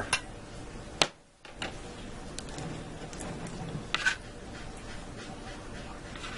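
A few sharp clicks and clinks from a metal spoon and a rotisserie spit being handled on a plastic cutting board. The loudest comes about a second in and a pair near four seconds, over a low steady hum.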